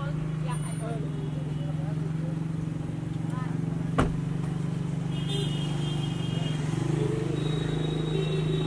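A vehicle engine idling with a steady low hum, and a car door slamming shut once about four seconds in.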